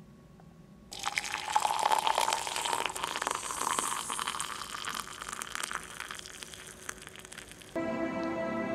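Water poured in a steady stream into a ceramic bowl. It starts about a second in, its pitch rises slightly as the bowl fills, and it stops just before the end.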